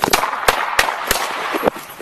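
Several sharp bangs in quick succession, a few tenths of a second apart, most likely handgun shots, over a continuous rustling hiss.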